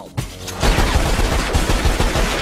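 Cartoon gunfire: a rapid volley of many shots in quick succession that starts about half a second in and keeps going.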